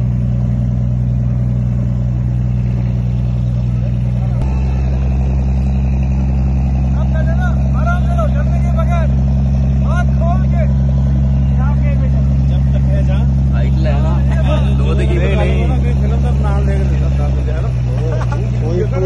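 Motorboat engine running steadily at speed with a loud, low drone; its note shifts about four seconds in and again near the end. Voices are heard faintly over it.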